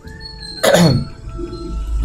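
A single cough, a little over half a second in, over background music.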